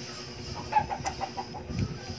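A chicken clucking: a quick run of short notes about a second in.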